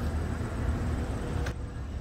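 Low, steady rumble of road-vehicle noise under a faint hiss; the hiss drops out abruptly about one and a half seconds in.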